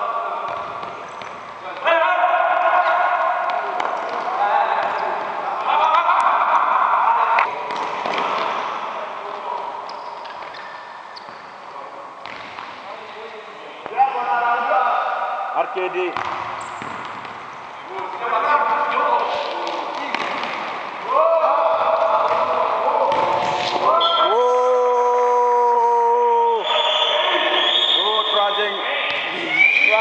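Voices shouting and calling out in an echoing sports hall, with the thuds of a futsal ball kicked and bouncing on the court floor. About three-quarters of the way through comes a long held note at a steady pitch.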